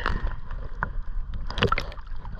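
Small waves lapping and splashing against a camera held right at the water's surface, with a few short, sharp splashes: one at the start, one a little before the middle, and a cluster near the end.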